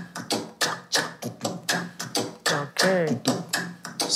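Afro percussion sample played back from the producer's session: quick, evenly spaced hits at about four a second, with a short falling voice-like sound about three seconds in.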